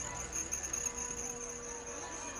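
A steady, high-pitched insect chirring, with a faint low steady hum underneath.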